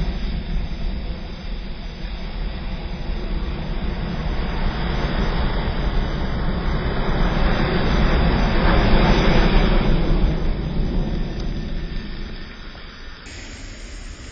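A large mass of burning matches flaring in a jet of flame, giving a steady rushing noise like a jet engine. It grows louder to a peak about nine seconds in, then dies down near the end.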